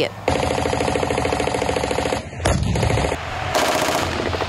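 Machine-gun fire in rapid, continuous bursts during a tank live-fire drill, with a heavier, deeper burst about halfway through and a second run of rapid fire near the end.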